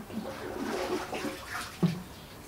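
Water sloshing and splashing as a plastic basin is dipped into a concrete wash tank and scooped full, with one sharp knock near the end.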